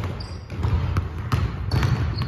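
Several basketballs being dribbled on a hardwood gym floor, giving many irregular, overlapping thumps.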